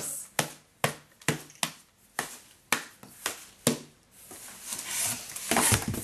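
Homemade cardboard oatmeal-container drum beaten with paper-towel-padded mallets: about nine dull, uneven taps at roughly two a second, stopping about four seconds in. Then rustling and a thump.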